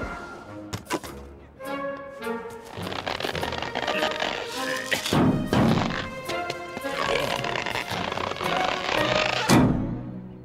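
Cartoon background music with a few thuds and non-verbal vocal sounds, as straps are hauled tight over a loaded car roof rack.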